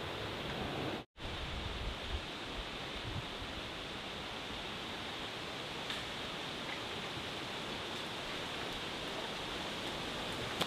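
Steady, even outdoor background hiss with no distinct events, broken by a brief drop-out about a second in.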